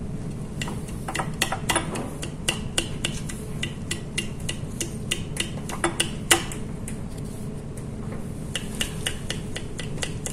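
Aluminium foil crinkling and being handled in gloved hands: many sharp, irregular crackles and small clicks over a steady low hum, thinning out after about six and a half seconds with a few more near the end.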